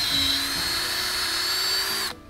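Cordless drill boring a tap hole into a maple trunk with a two-inch tapping bit: a steady high motor whine with the bit's scraping through the wood. The pitch sags briefly under load early on, and the drill cuts off at the very end.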